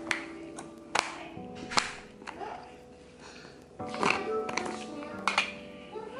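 Background music with held notes, over several sharp clicks from a plastic vitamin bottle being handled and opened.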